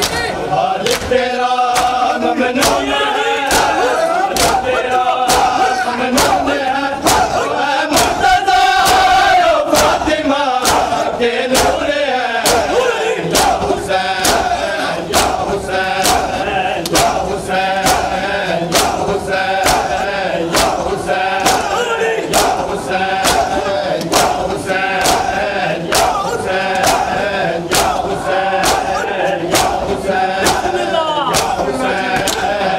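Crowd of men doing matam, striking their bare chests with open hands in unison: sharp slaps at an even beat a little more than once a second, under loud group chanting of a noha.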